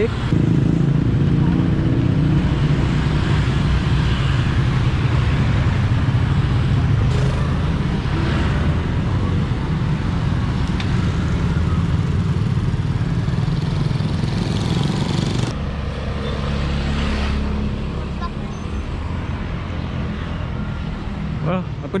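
Small motorcycle engine running steadily while riding along a street, with wind rushing over the microphone. About two-thirds of the way in the wind noise stops and the engine settles to a lower note as the bike slows.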